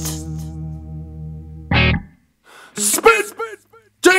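Heavy metal band recording in a break: held guitar chords stop short with a brief hit about halfway through, a moment of near silence follows, then a few short notes slide down in pitch before the full band comes back in at the end.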